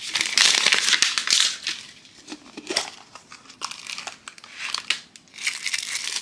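Plastic wrapping crinkling as shrink wrap is peeled off a plastic surprise egg and the cellophane packet inside is handled. It is loudest in the first second and a half, then drops to scattered crinkles and clicks, with another burst near the end.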